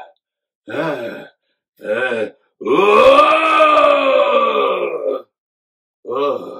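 A man's voice making Frankenstein-monster grunts and groans: two short grunts, then one long, loud groan that rises and falls in pitch.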